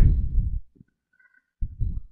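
A man's voice trailing off, then about a second of dead silence, then a short low sound just before he speaks again.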